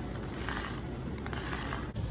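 Sidewalk chalk scraping across rough concrete in a couple of short strokes as a hopscotch grid is drawn.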